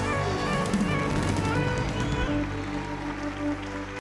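Live band music holding sustained chords at the close of a soul song. It drops in level after about two and a half seconds.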